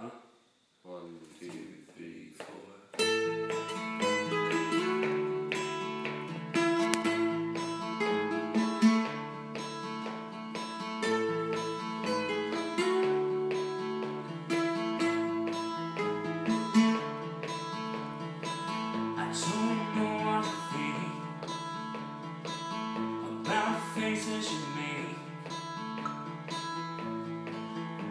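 Acoustic guitar playing a song's intro: a few quiet notes at first, then steady strummed chords from about three seconds in. A voice starts singing near the end.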